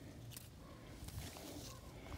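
Faint outdoor quiet with small rustles and clicks of avocado leaves and branches being handled.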